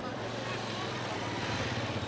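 A motorcycle engine running close by, a steady low drone that grows a little louder toward the end.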